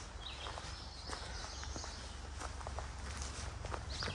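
Footsteps of a hiker walking on a dry, leaf-littered dirt forest trail, a series of light irregular crunches and scuffs.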